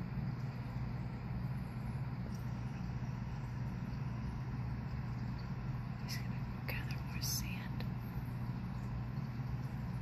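Steady low electrical hum of aquarium equipment, with a few brief soft whispers about six to seven and a half seconds in.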